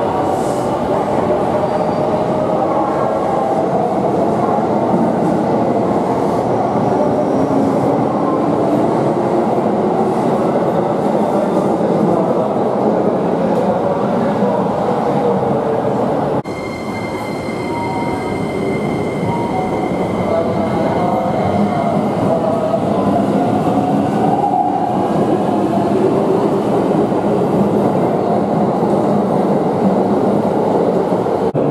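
Keikyu electric train pulling out of the platform, its motor whine rising in pitch over the running rumble. After a sudden cut, another Keikyu train runs along a platform with a steady high tone and a motor whine that rises and then falls.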